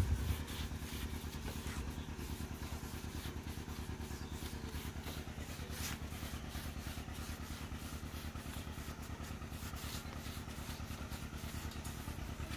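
A motor running steadily at an even speed, with a fast, regular pulse.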